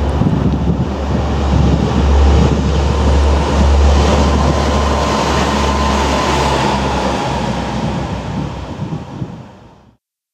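A train running past close by, with a deep steady hum under the rushing noise and a faint whine around the middle, dying away over the last second. Wind buffets the microphone.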